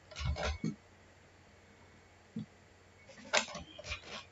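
Clicks and knocks of a computer mouse and keyboard in use: a short cluster at the start, a single click past the middle, and another cluster near the end.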